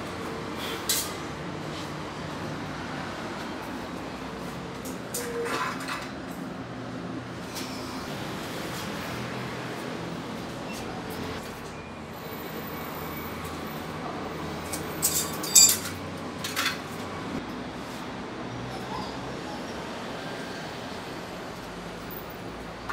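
Light clicks and knocks of a ceramic wall tile and hand tools being handled as the tile is measured and marked, over steady background noise. A cluster of sharper knocks about fifteen seconds in is the loudest sound.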